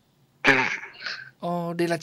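A short throat-clearing sound comes about half a second in, after a brief pause, and speech resumes shortly after.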